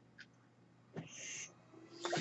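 Faint mechanical ventilator delivering a breath: a small click, then about a second in a short airy hiss lasting about half a second.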